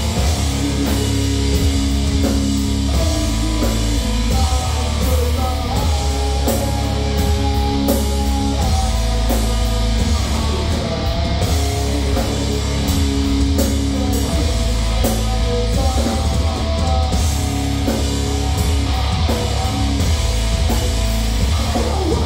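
A heavy metal band playing live at full volume: distorted electric guitars holding sustained low riffs over a drum kit, with cymbal and drum strikes throughout.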